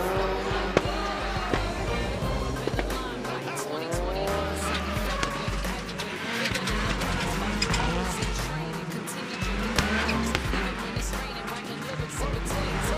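Rallycross Supercar engines revving hard, their pitch repeatedly climbing and dropping as the cars accelerate and shift gear, mixed with a rap music track's heavy bass beat.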